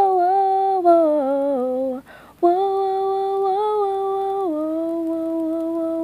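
A solo voice singing long, wordless held notes, with one short break for breath about two seconds in and a step down to a lower held note about halfway through.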